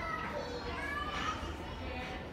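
Children's voices in the background: several high young voices talking and calling at once, none of it clear words.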